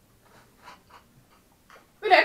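A few faint, short sucking sounds from people drinking from small cartons through straws, spread about a third of a second apart.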